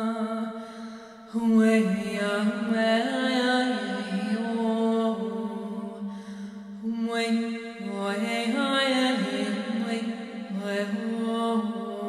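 A woman's solo voice chanting long, wordless held notes, sliding between a few pitches. The voice fades briefly about a second in, then comes back loud.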